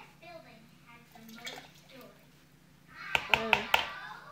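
Children's voices in the background, faint at first and louder near the end, where about four sharp clicks or taps come in quick succession.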